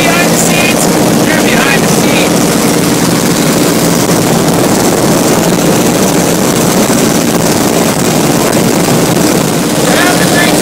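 Small propeller plane's engine droning steadily in flight, heard loud from inside the cabin over a rush of wind noise.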